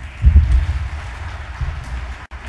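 Live-recording stage and hall noise: a steady noisy hum of the room, with low, heavy thumps about a quarter second in and again near the end.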